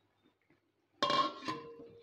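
Steel kitchenware clanking: one sharp metallic clank about a second in that rings briefly, then a lighter knock half a second later.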